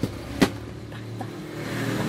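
Steady low hum of a car engine and street traffic, with one sharp click about half a second in.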